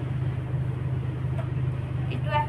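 A steady low hum with no break, from a continuous background machine or electrical source, with nothing else prominent over it.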